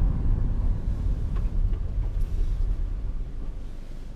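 Cabin noise of a 2019 Toyota Corolla LE on the move: a steady low rumble of road and engine noise that grows gradually quieter toward the end.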